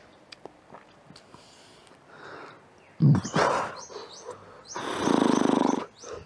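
A man's heavy sigh about halfway through, then a long, loud, rasping burp near the end, brought up by chugging fizzy cola.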